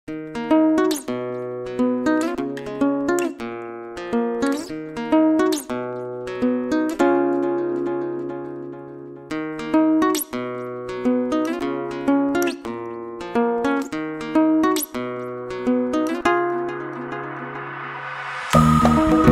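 Solo fingerpicked acoustic guitar playing a slow, gentle melody over bass notes, each note plucked and left to ring out.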